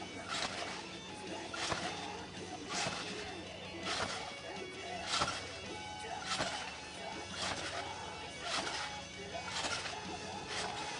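Trampoline mat and springs taking a jumper's repeated landings, a sharp thump about once a second, nine in a row, during consecutive backflips.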